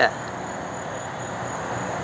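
Steady outdoor background noise, an even hiss, with a faint high-pitched chirping that repeats several times a second.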